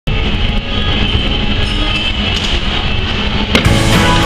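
Rock music laid over the footage, with a sharp hit about three and a half seconds in, after which it carries on with steadier held notes.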